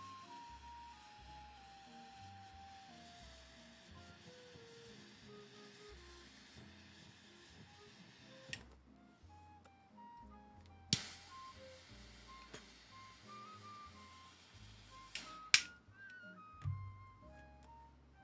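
Soft background music with a flute-like melody of stepping notes. Over it, a butane torch lighter's flame hisses for about the first eight seconds as a cigar is lit, stopping with a click. A few sharp clicks and a low thump come later.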